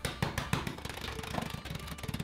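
Oreo cookies in a sealed plastic zip-top bag being pounded on a wooden table: a rapid, irregular run of knocks and crunches as the cookies break into crumbs.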